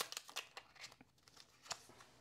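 Tarot cards shuffled by hand: a quick run of soft card clicks that thins out to a few separate snaps, with one more distinct snap near the end.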